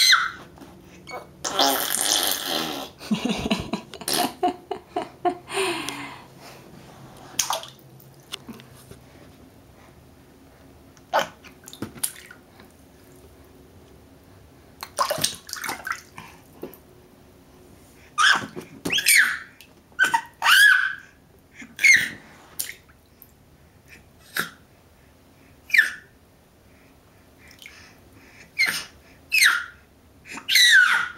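Baby splashing water in a small inflatable vinyl duck tub, with a burst of splashing about two seconds in, then a run of short high squeals and babbles in the second half.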